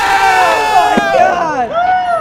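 Several people yelling and cheering at once in long, drawn-out shouts, their voices overlapping.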